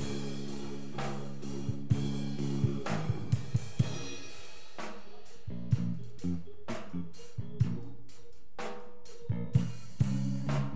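Live church band music: a drum kit with cymbal, hi-hat and snare strikes over sustained low chords. The chords thin out after about three seconds.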